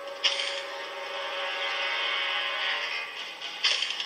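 Animated sci-fi episode soundtrack: a steady, many-toned machine hum starts abruptly about a quarter second in, with a second onset near the end, over music.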